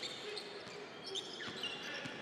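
Basketball being dribbled on a hardwood court, with a few sharp bounces over the steady murmur of an arena crowd.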